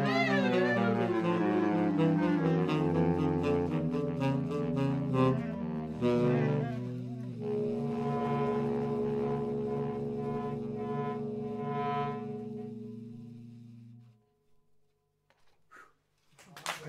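Woodwind trio of clarinet and two saxophones playing the closing bars of a jazz piece: moving lines, then a long held chord that fades away about fourteen seconds in.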